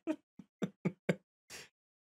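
A man laughing in short chuckles, about four a second, that die away into a breathy exhale.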